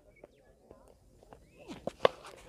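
Quiet open-air ambience with faint distant voices, then near the end a single sharp knock of a cricket bat striking the ball.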